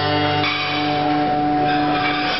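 Harmonica in a neck rack playing a long held chord over a ringing acoustic guitar chord in the closing bars of a folk-rock song.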